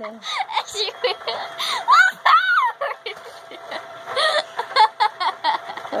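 A girl laughing hard in a string of short, high giggling bursts, with a woman's laugh near the end.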